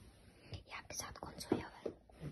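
A woman whispering in short, broken phrases.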